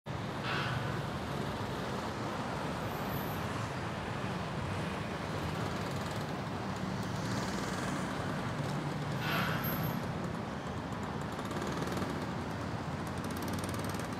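Steady road-traffic noise, a low rumbling hum with a noisy wash over it, with two brief hisses, one just after the start and one about nine seconds in.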